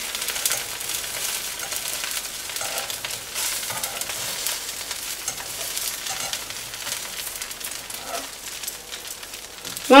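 A thin flour-batter spring roll sheet sizzling steadily in a nonstick pan as it cooks through and its edges start to lift from the pan.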